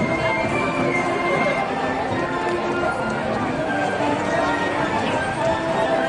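Marching band playing long held chords, heard from the stands with crowd chatter close by.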